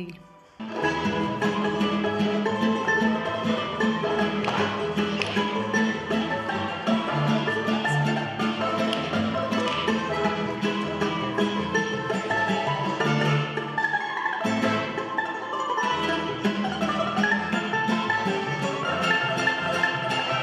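Instrumental folk dance music accompanying a children's stage dance. It starts about a second in and breaks off briefly about fourteen seconds in.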